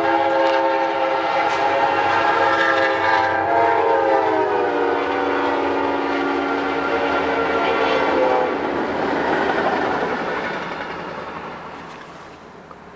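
Amtrak locomotive air horn sounding one long chord of several tones that drops in pitch about halfway through as the train goes past, then the train's rumble fading away.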